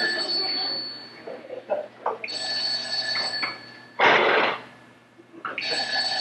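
Telephone ringing on stage in repeated rings about three seconds apart, each ring a steady high trill lasting roughly a second. There is a short, loud burst of noise about four seconds in.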